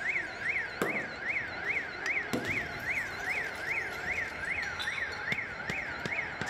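An electronic siren wailing up and down in a fast, steady cycle, about two and a half times a second. Sharp bangs cut through it about a second in and again about a second and a half later, with a few smaller cracks near the end.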